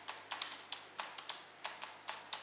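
Typing on a computer keyboard: a quick, uneven run of separate keystrokes, about five a second.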